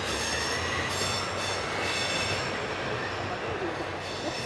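A diesel railcar passing on the Tadami Line with a steady rumble and low engine hum, and high-pitched wheel squeal that comes and goes.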